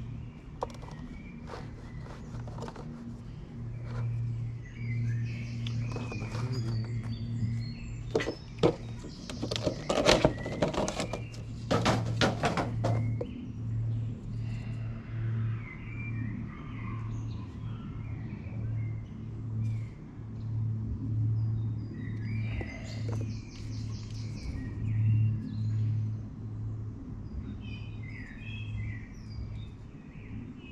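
Quiet background music with a low pulsing bass, over birds chirping now and then. About eight seconds in, a few seconds of sharp knocks and rustling come from plastic cat flap parts being handled.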